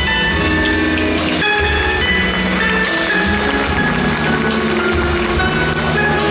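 Live band playing an instrumental passage with keyboard, sustained melody notes and a steady percussion beat.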